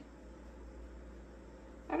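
Quiet room tone with a steady low hum and no distinct sound events, until a woman's voice starts right at the end.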